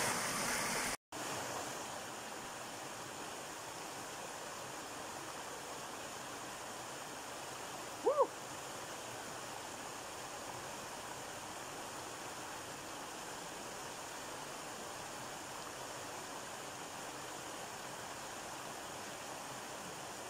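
Small rocky stream spilling over low ledges in little cascades, a steady rush of water. The sound cuts out for an instant about a second in, and there is one short pitched sound about eight seconds in.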